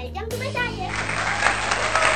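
Applause starting about a second in, over background music with steady low notes, after a brief voice.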